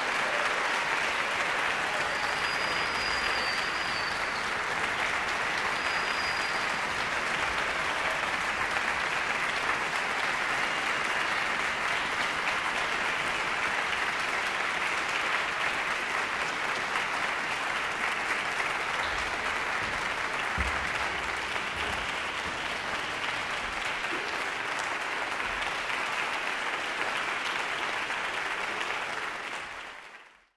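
Audience applauding, a steady sustained clapping that fades out near the end.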